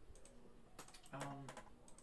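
A few scattered, quiet clicks of a computer keyboard and mouse, with a short spoken 'um' about a second in.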